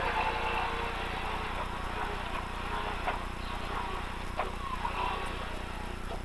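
Lada VFTS rally car's four-cylinder engine and gravel road noise heard inside the cabin, a steady buzzing drone that eases off slightly as the car slows for a chicane. There are a couple of faint clicks around the middle.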